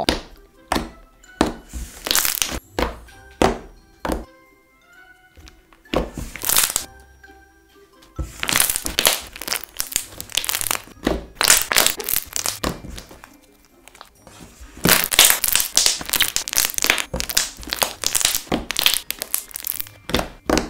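Thick, glossy slime being squeezed, pressed and poked by hand, making clicks and pops: a few scattered ones at first, then quick runs of them in the second half. Soft background music plays under it.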